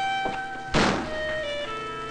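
A door shutting with a single heavy thunk a little under a second in, over background music of held notes that step from one pitch to the next.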